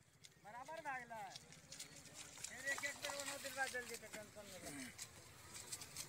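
Faint voices of people talking at a distance, with scattered light clicks.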